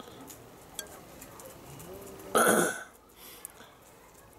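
Beer being poured from a bottle into a glass, with a few faint clicks, then one short, loud gurgle about two and a half seconds in.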